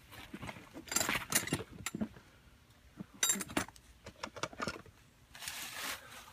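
Scattered light clicks, clinks and rustles of hands and tools being handled at the unit, in three short clusters, with a brief rush of noise near the end.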